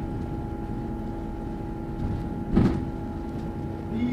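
Inside a moving double-decker bus: a steady low engine and road rumble with a constant hum. A single loud thump comes about two and a half seconds in.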